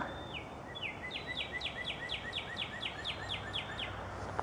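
Northern cardinal singing: a rapid series of clear whistled notes, each sliding down in pitch, starting slower and speeding up to about four a second.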